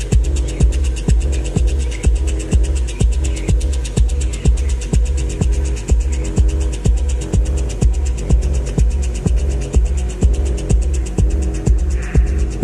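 Deep, hypnotic techno: a steady four-on-the-floor kick drum at about two beats a second under a throbbing bass line, with fast hi-hat ticks on top.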